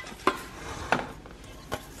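A few light knocks and taps as a round aluminium cake pan is handled against a metal wire cooling rack.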